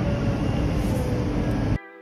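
Steady low rumble of outdoor yard noise with a faint thin tone over it, which cuts off abruptly near the end at an edit.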